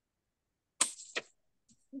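Two short bursts of rushing, breath-like noise on a video-call microphone, about a second in and a fraction of a second apart.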